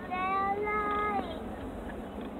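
A child singing one long, high, wordless note that slides down as it ends.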